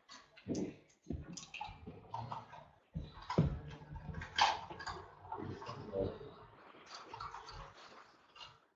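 Faint, irregular clicks, knocks and rustles of objects being handled and moved about on a desk.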